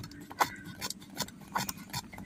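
Several small, sharp clicks and taps, about one every half second, from hands handling a coax connector at a NanoVNA SAA2 antenna analyzer.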